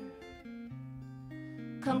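Worship band music in a quieter gap between sung lines: acoustic guitar strumming over held steady notes, with a low note coming in under it. A voice comes back in singing near the end.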